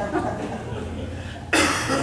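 A single sharp cough about a second and a half in, after a stretch of faint sound.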